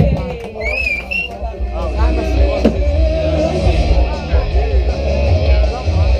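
Amplified live rock band sound at the end of a set: a strong, steady low bass with voices mixed in, and a short rising whistle about a second in.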